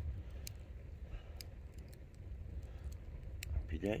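Wood campfire crackling, a scattering of sharp pops and snaps over a steady low rumble.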